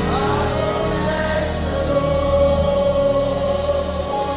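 Gospel worship song with a choir holding long, sustained notes.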